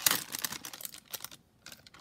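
Clear plastic packaging crinkling and crackling in the hands, a quick run of small clicks that is densest in the first second and thins out after.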